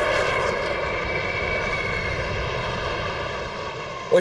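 A formation of jet fighters flying over: a steady jet engine noise with a high whine, easing off slightly towards the end.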